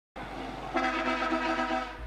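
Road traffic noise, then a vehicle horn sounding one long, steady blast that starts under a second in and holds without a break.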